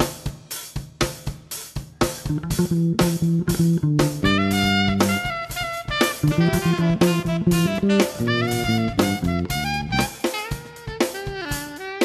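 Live fusion band playing: drum kit keeping a steady beat of about three strokes a second under an electric bass line. About four seconds in, a melody of sliding notes joins.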